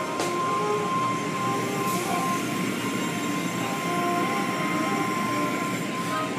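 Automatic car wash machinery running, heard through the car's windows: a steady rushing noise with a constant high-pitched whine.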